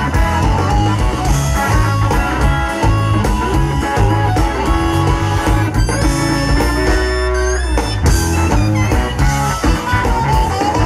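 Live electric blues band playing: electric guitar and harmonica over bass and drums. About six seconds in there is a run of sliding, bent notes.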